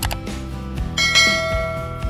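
A bell-like notification chime from a subscribe-button animation rings out about a second in and fades, over steady background music.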